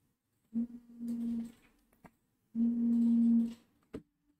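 A man's voice humming twice at a low, steady pitch, each hum lasting about a second, with a single click between them.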